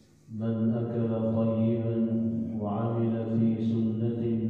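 A man's voice chanting a religious recitation in long, held melodic phrases. It comes in after a brief breath pause at the start.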